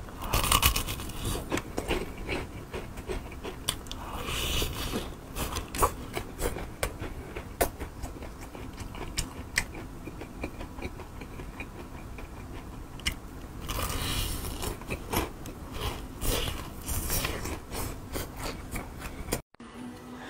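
Close-up crunching and chewing of a deep-fried chicken drumstick's crisp battered crust: crackling bites with many sharp crunches, heavier bursts about four seconds in and again around fourteen seconds.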